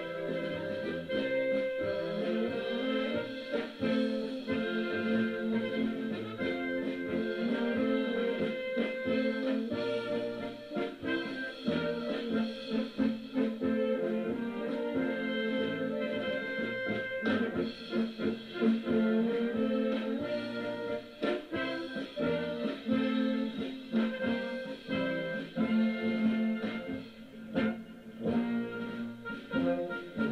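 A Blaskapelle, a wind band of clarinets and brass horns, playing music live.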